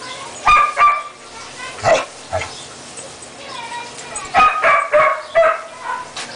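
Five-week-old Siberian husky puppies giving short, high-pitched yips and barks while play-fighting: two about half a second in, one near two seconds, then a quick run of several between four and five and a half seconds.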